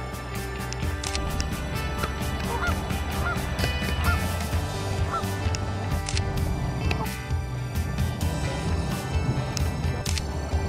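Geese honking, a string of short calls between about two and five seconds in, over background music with a steady beat.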